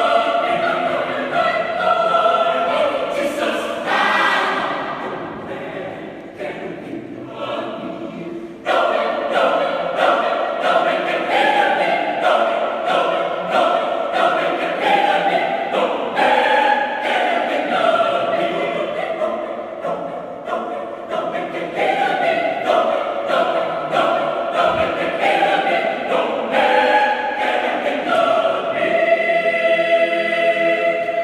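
Mixed choir of women's and men's voices singing in harmony. It grows softer after about four seconds, then comes back in loud all at once near nine seconds in.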